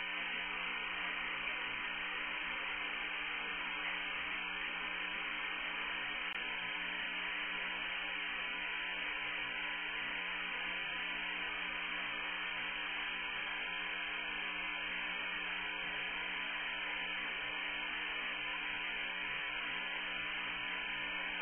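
Steady hiss of an open air-to-ground radio channel between transmissions, narrow like a radio link, with a faint steady hum under it.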